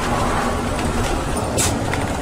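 Motorhome engine and road noise heard from inside the cab while creeping along in slow traffic: a steady low rumble with a faint hum, and a short hiss about one and a half seconds in.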